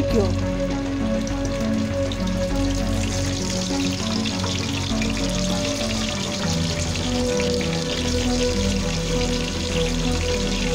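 Raw chicken pieces sizzling and crackling in hot oil in a pot as more pieces are laid in, over steady background music.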